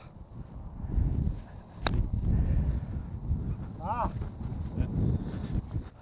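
A single sharp click of a wedge striking a golf ball on a short chip shot, about two seconds in, over a low rumble of wind on the microphone. A man's short "Ah!" follows near the end.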